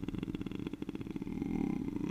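A man's voice holding a long, low, creaky 'ehh' of hesitation in vocal fry, a fast rattle of pulses that runs on until he resumes speaking just after.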